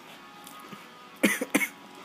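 Two short, sharp vocal bursts from a person close to the microphone, a quarter-second apart just past the middle, over faint television sound.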